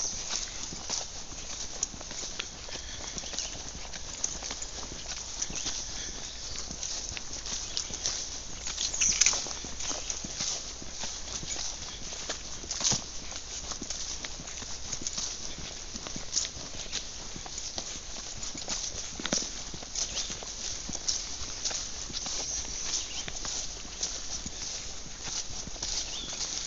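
Footsteps of people walking on a mowed grass trail: a steady run of soft steps and rustles, with a brief louder noise about nine seconds in.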